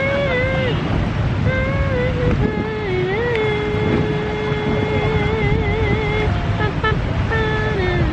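A slow melody of a few long, wavering notes, the longest held for about three seconds in the middle, over a steady low rumble of street traffic.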